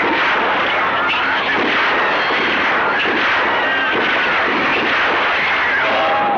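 Continuous din of gunfire with a few sharper shots standing out, overlaid by screaming and shouting voices.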